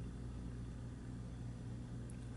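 Quiet room tone: a faint, steady low hum under a soft even hiss, with no taps or other events.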